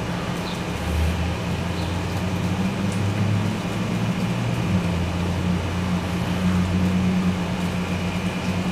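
Low, steady drone of a vehicle engine running, its pitch shifting slightly up and down.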